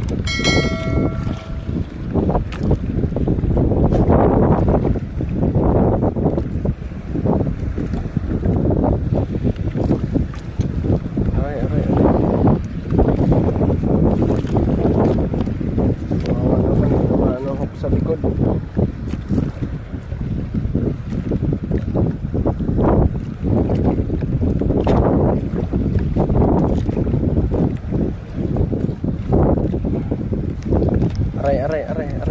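Wind buffeting the microphone in uneven gusts, with a short electronic chime of a few steady tones at the very start.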